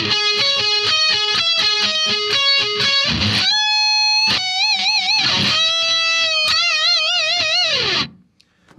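Distorted electric guitar playing a fast picked arpeggio run, then long bent notes, two of them shaken with wide vibrato, with the last note dropping in pitch at the end.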